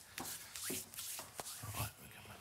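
Several short rustling and scuffing noises in quick succession, the loudest near the end.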